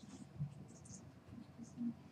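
Faint scratching and rustling with soft low voices in the background of a small classroom, and a couple of brief soft bumps.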